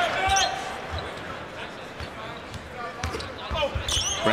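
A basketball dribbled on a hardwood court, heard as several short low thumps over the murmur of an arena crowd.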